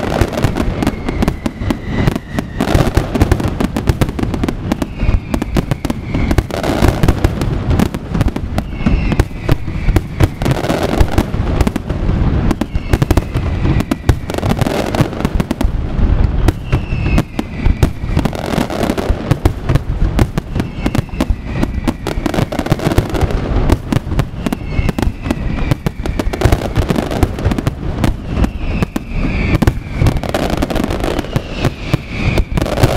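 Aerial fireworks display in full flow: shells bursting in a dense, unbroken barrage of bangs and crackle, with short falling whistles recurring every couple of seconds.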